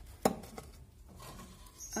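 A single sharp knock about a quarter second in as the lid of a wooden nest box on a finch cage is lifted open, followed by faint handling noise.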